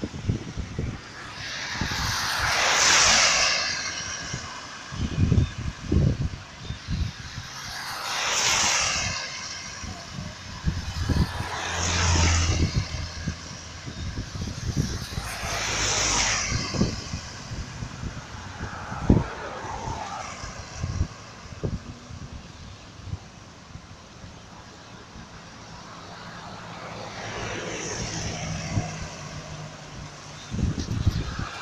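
Cars passing one after another on a wet highway, each a swell of tyre hiss and spray that builds and fades over a couple of seconds, about five in all. Irregular low thumps run underneath.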